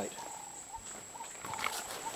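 Outdoor background: a steady high-pitched insect drone, with faint short mid-pitched calls near the start and again near the end.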